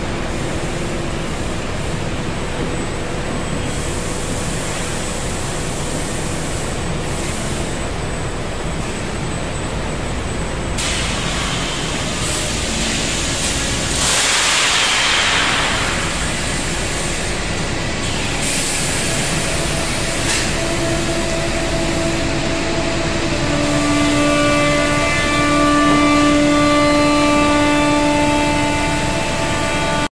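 Steady machinery noise from a foundry pouring machine and its moulding line as molten metal is poured into a row of moulds, with a short swell of hiss about halfway through and a steady pitched whine over the last ten seconds.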